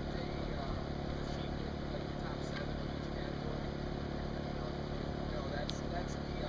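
A steady low engine hum, with indistinct voices of people talking over it.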